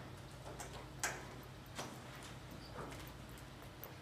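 Faint footsteps on a hard floor, a few irregular steps, over a low steady hum.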